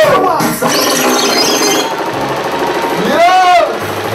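Amplified voices over a club PA at a live dancehall show. A rapid rattling pulse fills the middle, and one long pitched cry rises and falls about three seconds in.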